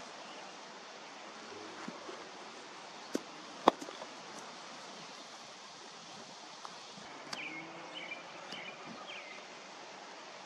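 Open-air ambience over a grass field: a steady hiss of background noise, with two sharp knocks a half second apart about three seconds in, the second the louder. A few short high chirps come in the second half.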